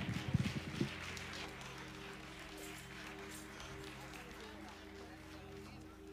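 Soft church keyboard chord held steadily under faint congregation murmur, with a few low thumps in the first second.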